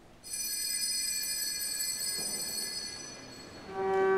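A bell is struck once and rings high and bright, its tones dying away over about three seconds. Just before the end a pipe organ comes in with a loud sustained chord.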